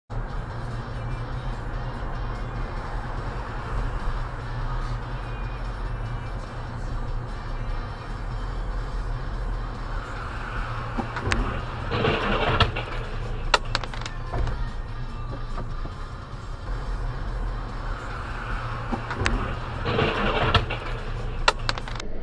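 Steady engine hum and tyre rush on damp asphalt heard from inside a moving car, with two brief louder swells, one about midway and one near the end, and a few sharp clicks.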